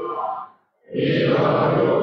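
Buddhist chanting by a single voice at the microphone, in long held phrases. One phrase ends about half a second in, and after a brief silence the next begins about a second in.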